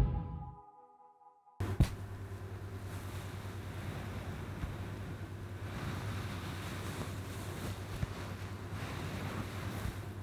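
Background music fading out, a second of silence, then a steady rushing noise with a low rumble, like wind buffeting an outdoor microphone, with a single small knock shortly after it starts.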